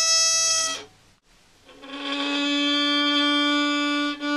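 Violin bowed in long held single notes. A high note ends just before a second in, and after a short pause a lower note is drawn out steadily to the end.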